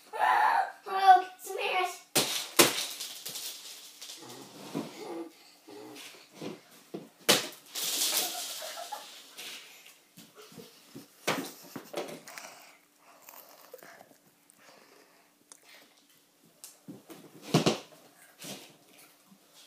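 Children playing at a small table: a child's voice calls out at the start, then several sharp slaps or knocks come through, the loudest near the end, with a rushing noise lasting about two seconds around the middle.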